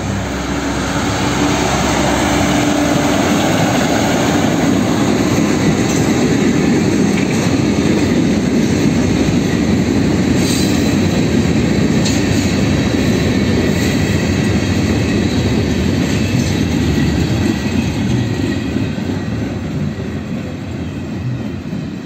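Freight ballast cars drawn by a Brandt hi-rail truck rolling past close by: steel wheels on the rail give a steady rumble and clatter, with occasional clanks and wheel squeal. A steady hum sounds over the first few seconds, and the noise eases slightly near the end as the cars move away.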